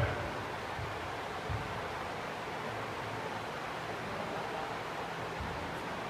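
Steady hiss of background noise with a few faint low thuds.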